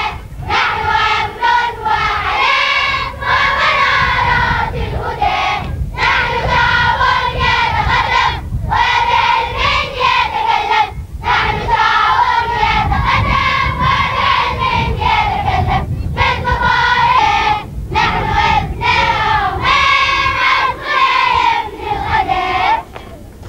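A chorus of women and girls singing together in unison. The song comes phrase by phrase, with short breaths between phrases every two to three seconds.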